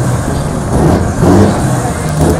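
An old Mercedes-Benz diesel truck engine running, its pitch rising and falling in repeated swells about once a second.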